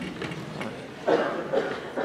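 Indistinct voices in a hall, with a louder stretch of talking starting about a second in.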